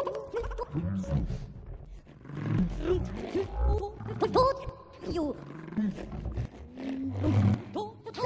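Granularly processed voice from a Kyma computer-music system: fragments of a voice smeared and shifted in pitch into gliding vocal tones over a low rumble, swelling and fading in uneven waves. About halfway through a tone rises and is held briefly.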